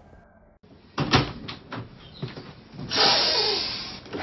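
An interior door being opened: a few sharp latch clicks and knocks, then about three seconds in a loud rushing noise that fades away.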